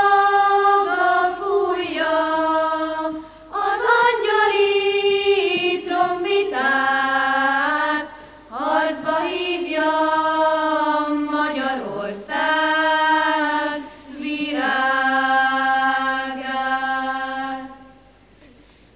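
Children's choir singing in phrases of a few seconds each, with short breaks between them, the last phrase ending just before the close.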